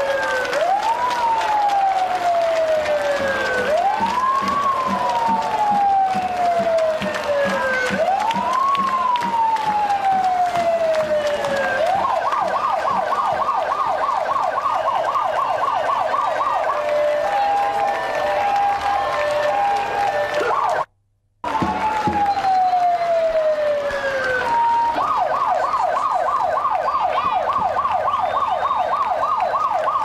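Electronic emergency-vehicle siren switching between a slow wail, each cycle rising quickly and falling over about four seconds, and a rapid yelp, with a few short steady tones between them, over the noise of a large street crowd. The sound cuts out briefly just past the middle.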